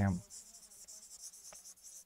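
Faint scratching and tapping of a pen writing on a smart-board screen, with one small click about one and a half seconds in.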